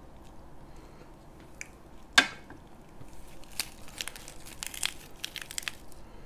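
Crisp curly lettuce leaf crinkling and crackling as it is folded by hand into a wrap, a flurry of small crackles in the second half. About two seconds in, one sharp clack of the metal tongs being set down.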